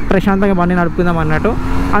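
A man talking continuously over the low, steady rumble of a Triumph Street Triple motorcycle being ridden, mixed with wind noise.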